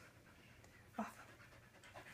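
Faint dog panting, with one brief sound about a second in.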